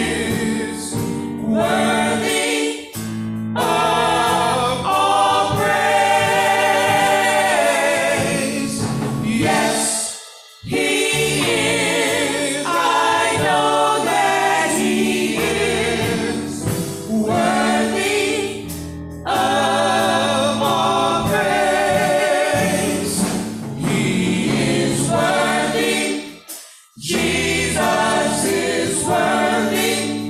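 Small gospel vocal group of four singing into microphones, voices wavering with vibrato over sustained low accompanying notes. The music drops out briefly twice, about ten seconds in and again near the end.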